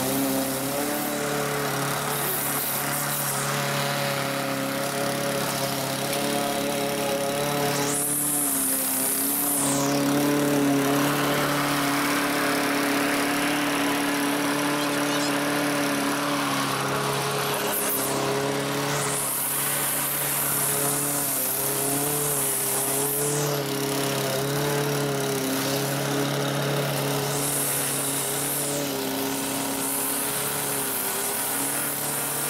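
Stihl gas string trimmer running at high revs, revving up and down several times, with a gas push mower's engine running alongside it.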